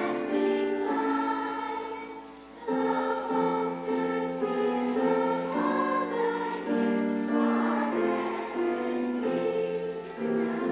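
Children's choir singing in unison, holding long notes, with a short break between phrases about two seconds in.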